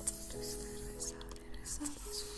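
Soft solo piano music with held notes changing every half second or so, layered with several brief soft hissing sounds on top.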